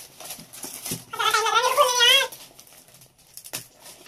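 A high-pitched, wavering cry lasting about a second, starting a second in, with faint rustling and crinkling of gift-wrap paper being handled around it.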